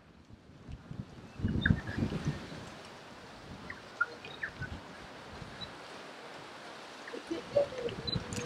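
Outdoor ambience over a steady low hiss, with scattered short bird chirps. There are brief low rumbles about a second and a half in.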